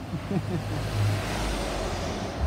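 A motor vehicle going past, its noise swelling to a peak about a second and a half in, over a low rumble.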